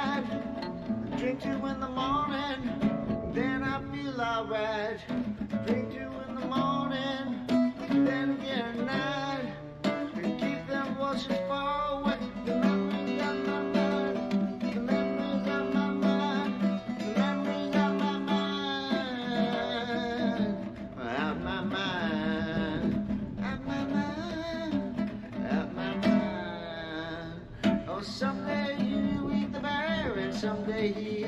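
Solo acoustic guitar playing a melodic instrumental passage, the notes sounding in a continuous line without sung words.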